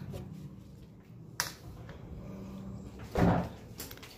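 A plastic freezer drawer pushed shut with a sharp click about a second and a half in, then a heavier thud a little after three seconds as the freezer is closed.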